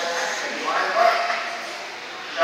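Electric 1/10-scale RC off-road buggies whining as they race, the pitch of the motors and gears rising and falling with throttle and swelling to its loudest about a second in.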